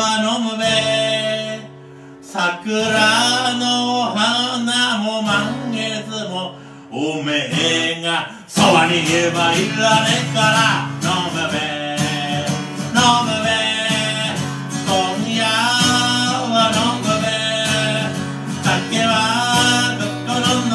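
A man singing into a microphone while playing a steel-string acoustic guitar. The first part runs in phrases with short breaks, then about eight seconds in the strumming becomes fuller and steadier under the voice.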